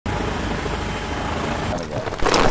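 A steady motor rumble with voices over it, changing abruptly just before the end.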